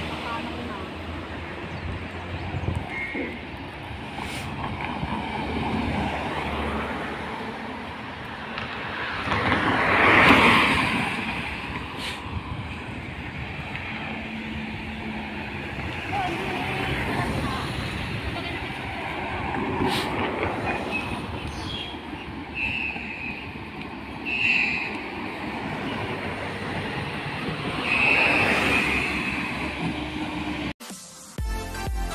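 Roadside traffic: motor vehicles passing on the road over a steady street noise, the loudest pass about ten seconds in, with others near twenty and twenty-eight seconds.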